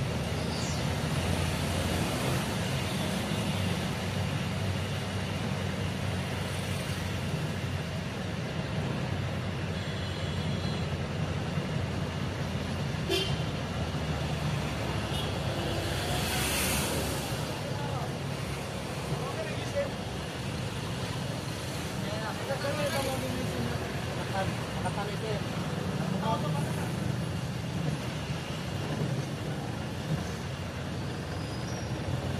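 Steady engine and road noise of a motor vehicle moving through traffic, with faint voices in the background and a brief hiss just past the halfway point.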